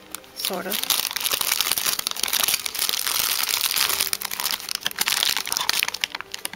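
Clear plastic packaging bags crinkling and rustling continuously as packed items are handled in a cardboard box, with a brief hum of a voice near the start.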